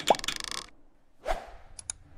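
Animated-outro sound effects: a pop that sweeps up in pitch with a short rattle at the start, a whoosh a little over a second in, and two quick mouse-click ticks near the end.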